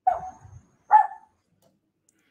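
A small dog giving two short barks about a second apart.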